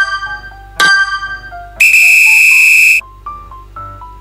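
Background music with a stepping melody of short notes and a chime-like strike about a second in. Near the middle, a loud, steady high tone sound effect lasts just over a second and then cuts off, after which the melody carries on.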